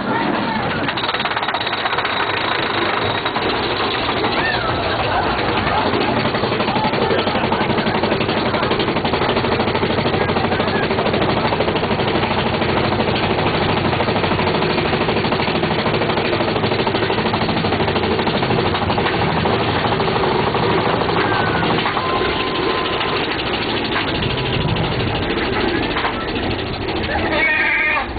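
Mine-train roller coaster cars running along the track, with a steady loud rattle and clatter of wheels and cars.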